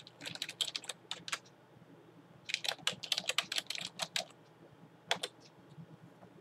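Typing on a computer keyboard: two quick runs of keystrokes, then a single louder click about five seconds in.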